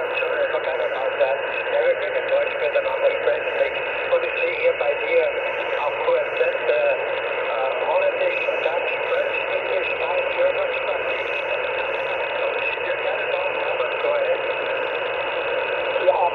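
Single-sideband voice on the 20-metre amateur band, heard through an ICOM IC-R75 receiver's speaker: a voice under steady band hiss, with the thin, narrow sound of a shortwave signal.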